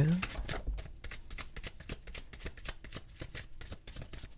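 Tarot deck being shuffled by hand: a rapid, uneven run of light clicks and flutters as the cards slide and tap against each other.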